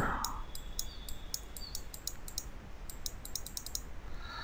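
Runs of light, sharp computer mouse clicks in two quick clusters, one in the first second and another later on, over a faint steady hum.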